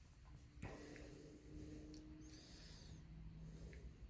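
Near silence: room tone, with faint steady low hums and one soft click about half a second in.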